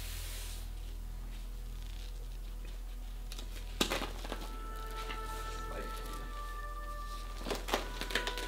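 Steady low room hum for the first few seconds, then soft background music with held notes fading in, with a few light knocks and clicks from the foam being handled.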